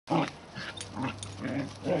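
Dogs making short growling vocalizations while play-fighting, four brief bursts about half a second apart, the first the loudest.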